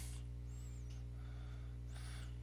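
Steady low electrical mains hum, with two faint high chirps, one about half a second in and one near the end.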